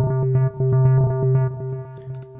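Omnisphere software synthesizer's arpeggiator playing a low synth note retriggered as a rapid, even stutter: ratcheting from a step divider set to four. It dies away near the end.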